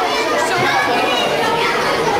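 Several children talking over one another at once: busy, overlapping chatter with no single voice standing out.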